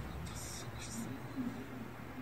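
Faint, hushed speech with a few short hissing s-sounds, over a steady low hum.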